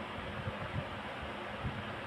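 Steady, even background hiss of room noise between spoken passages, with no distinct event.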